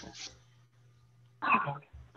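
A person clears their throat once, briefly, about one and a half seconds in, heard over a video-call connection with a faint low hum underneath.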